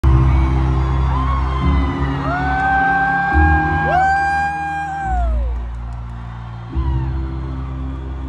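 Arena PA music of slow, sustained low chords that change every second or two, with a fan's long high whoop rising, holding for about three seconds and falling away in the middle, and other whoops from the crowd.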